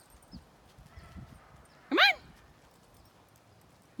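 Faint footsteps on a gravel road: soft, uneven crunching and scuffing of feet in the first half.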